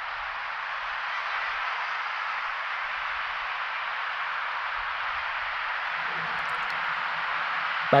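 Steady, even hiss of outdoor city ambience amid high-rise towers, with no distinct events; a faint low hum joins about six seconds in.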